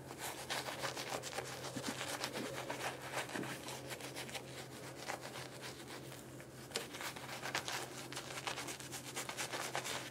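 Synthetic shaving brush working lather onto the face: a soft, rapid scrubbing of bristles in quick back-and-forth strokes. It is busiest over the first few seconds and again near the end.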